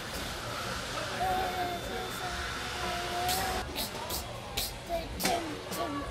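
A child humming softly in a few held notes over a low background murmur, then several sharp clicks between about three and five seconds in.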